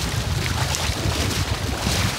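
Wind buffeting the microphone over sea water washing around the waders, an irregular low rumble with a hiss above it.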